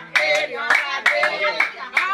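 Hands clapping in a steady rhythm, about two to three claps a second.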